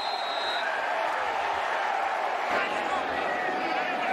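Football stadium crowd noise, a steady dense din of many voices, reacting to an interception.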